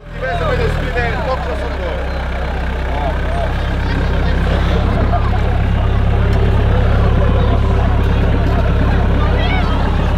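An off-road 4x4's engine running under load as the vehicle works its muddy tyres through a deep rut. It makes a steady low drone that grows gradually louder over the first several seconds, with people's voices over it.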